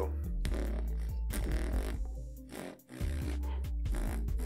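Beatboxed inhaled 808/sub-bass lip roll: deep buzzing bass notes made by rolling the lips, curled in an O shape, while breathing in hard, over a background beat. The sound drops out briefly just before three seconds in.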